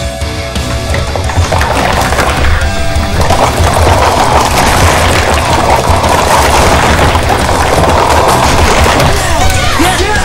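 Rapid, overlapping clatter of plastic sport-stacking cups from several stackers doing the cycle stack at once, mixed with heavy metal music. The clatter begins a second or two in and stops shortly before the end, when voices break in.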